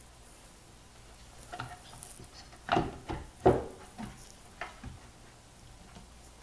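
Handling noise from fitting the rear amplifier panel back into a Yamaha HS7 monitor's cabinet: a string of short knocks and scrapes, the two loudest close together around the middle.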